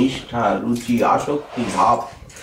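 A man speaking: speech only.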